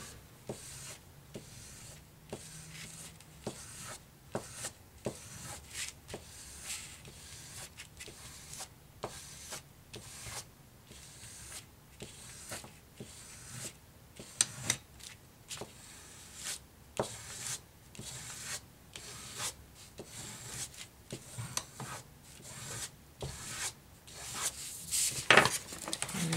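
A bone folder rubbed over a manila envelope in short, irregular scraping strokes, dry tool on paper, to smooth paper glued inside without wrinkling it. A few louder strokes come near the end.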